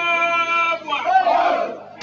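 A loud vocal call held on one steady pitch for about a second, breaking off into shorter spoken or called sounds near the end.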